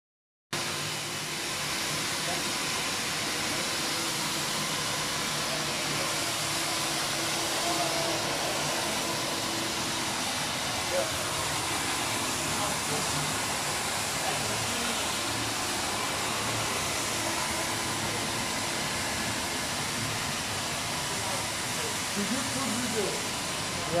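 Wilmop 50 compact floor scrubber running as it cleans the floor, a steady, even motor-and-suction noise with a low hum underneath that starts about half a second in and holds level.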